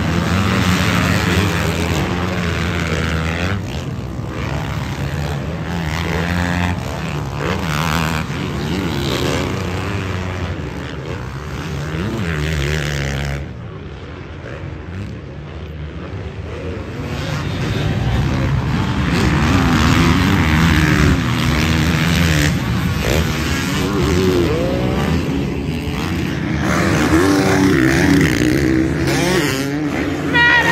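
Several motocross bikes racing on a dirt track, their engines revving up and down in pitch as the riders work through turns and jumps. It dips quieter for a few seconds about halfway through, then builds again.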